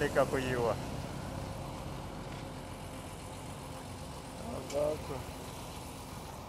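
Steady low rumble of road traffic: vehicle engines running as a truck and a motorcycle move along a dirt road.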